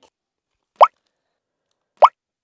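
Two short, rising "bloop" pop sound effects about a second apart, each a quick upward-sliding plop, over otherwise dead silence.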